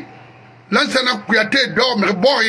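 A man talking in a monologue, resuming after a pause of under a second.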